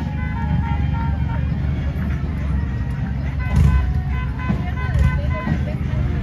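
Parade street sound: a vehicle engine's steady low rumble, with crowd chatter and faint music.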